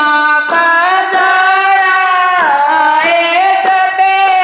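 Women singing a Haryanvi devotional bhajan together, drawing out a long line that dips in pitch about halfway, with hand claps keeping time.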